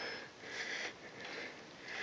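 A person breathing hard after exertion: faint, quick, breathy puffs about twice a second.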